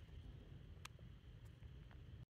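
Near silence: faint low room-tone rumble with a couple of faint clicks.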